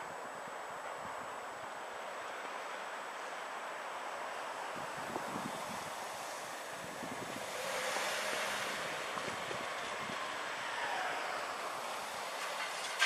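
Wind rushing on the microphone with a car approaching along the road, its engine and tyre noise growing louder in the second half as it nears the level crossing.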